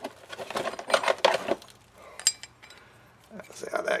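Small machined brass parts being handled and fitted together by hand: a packing gland nut put into its gland on a model steam engine, with handling rustle and a few sharp metal clicks.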